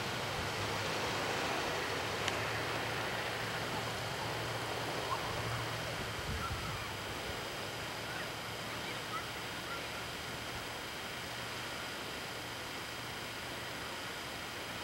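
Steady hiss with a low hum underneath, the background noise of an old camcorder recording outdoors, with a faint click about two seconds in.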